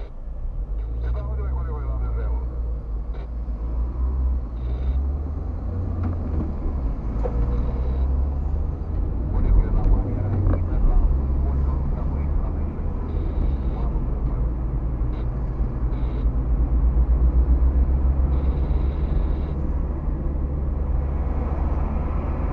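Car cabin driving noise picked up by a dashcam: a steady low rumble of engine and tyres on the road, swelling a little around the middle and again near the end.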